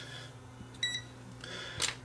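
One short, high electronic beep from a Tesmen TM510 digital multimeter's beeper about a second in, then a faint click near the end, over a low steady hum.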